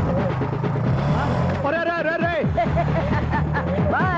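Motorcycle engine running steadily as the bike rides around, with people's voices calling out over it.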